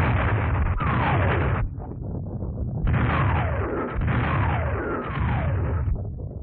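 Artillery barrage on an early sound-film track: shells whistling down with falling pitch, one after another, over a continuous rumble of bursts. There are two volleys, the first in the opening second and a half and the second of about three shells from three seconds on, with a quieter rumbling lull between.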